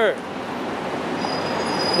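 Street traffic noise: a steady rush of passing vehicles, with a faint high whine coming in about halfway through.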